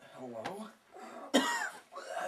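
A person coughing and making strained, choking vocal sounds, with one loud harsh cough a little past the middle.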